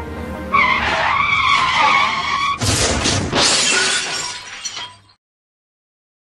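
A car's tyres screeching for about two seconds, then a crash with glass shattering that dies away and cuts off about five seconds in.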